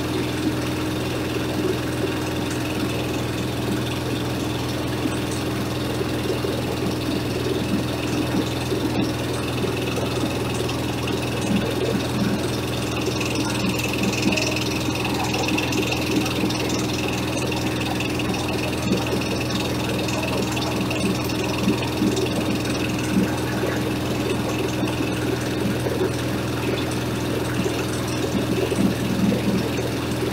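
Small stationary diesel engine running steadily at an even speed, driving a corn husker-sheller. From about ten seconds in, irregular knocking and rattling rises over its steady note.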